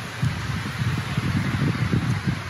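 Wind buffeting the microphone outdoors: an irregular, gusting low rumble that starts a moment in and keeps on, over a faint hiss.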